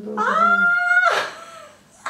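A woman's high-pitched excited squeal that glides up and is held for about a second, then breaks off into a breathy gasp.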